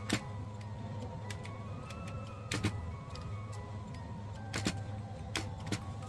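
Keys of a plastic desk calculator pressed one by one, a sparse series of sharp clicks, some in quick pairs, as a subtraction is entered. Underneath run soft background music and a low steady rumble of motorcycles passing outside.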